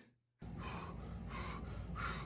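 A man breathing hard and fast, sharp breathy rushes coming about every 0.7 seconds. They start abruptly about half a second in, over a steady low hum.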